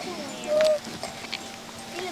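A girl's short whimpering cry about half a second in, over faint background music.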